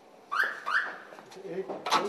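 A door being unlocked and opened: two short, high squeaks that rise in pitch, then a sharp click near the end as the latch gives.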